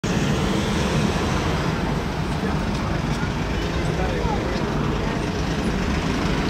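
Steady city street traffic noise, a continuous low rumble, with indistinct voices in the background.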